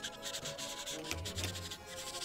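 Paint marker tip rubbing back and forth on paper in quick, repeated strokes.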